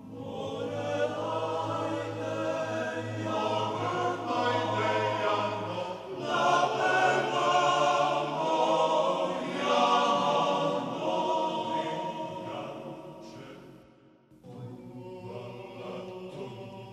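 A choir singing a choral arrangement of a Serbian folk dance (oro): many voices over a low held note for the first six seconds, then a louder full passage, breaking off briefly about fourteen seconds in before going on softly.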